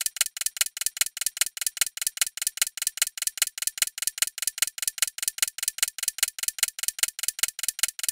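Clock-ticking sound effect, fast and even at several ticks a second: a countdown timer running while the quiz waits for an answer.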